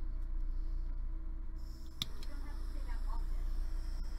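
A steady low electrical hum with one sharp click about halfway through, and a thin high whine setting in just before the click; brief murmured speech follows.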